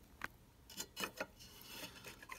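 Faint clicks and light rubbing as a circuit board with large electrolytic capacitors is shifted by hand against a metal chassis, about four small taps.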